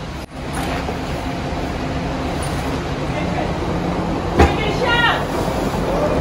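Steady rush of wind and sea on the open deck of a moving ship. A single sharp knock comes about four and a half seconds in, followed by a brief raised voice.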